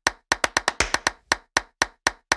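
Rapid run of sharp percussive clap hits, about six a second in an uneven rhythm, played as an edited-in transition sound effect.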